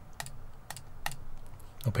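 Sharp clicks at a computer, about four of them roughly half a second apart, as the Reconnect button is pressed again and again.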